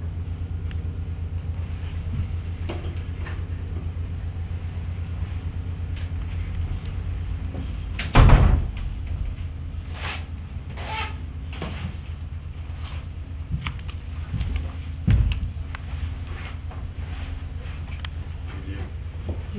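A wooden front door shut with a loud thump about halfway through, followed by a few lighter knocks and a second thump a few seconds later, over a steady low hum.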